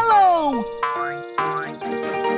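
Children's cartoon music with sound effects: a bright tone slides down in pitch at the start, then two quick upward sweeps follow over steady musical notes.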